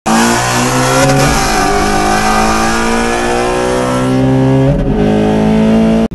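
V8 engines at full throttle in a side-by-side race, heard from inside the cabin of a manual C6 Corvette with its LS3 V8 on headers and cold air intake. The engine note holds a loud, steady drone with slowly shifting pitch. It breaks briefly near the end.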